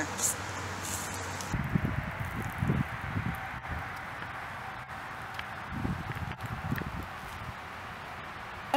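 Woodland outdoor ambience: a steady hiss with two spells of low, irregular rumbling, about a second and a half in and again near six seconds.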